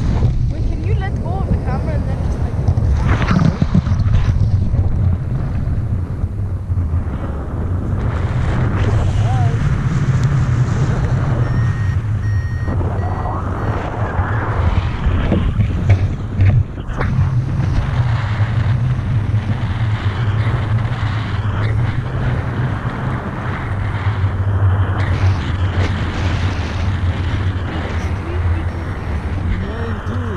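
Wind rushing over the camera's microphone in flight under a tandem paraglider: a loud, steady low buffeting that swells and dips as the airflow changes.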